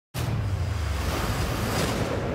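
Trailer sound design under the studio logos. A low, steady rumble sits beneath a rushing, wind-like noise, and it cuts in abruptly just after the start.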